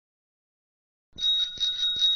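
A bicycle bell sound effect ringing, starting just over a second in as a quick series of rings with a steady high pitch.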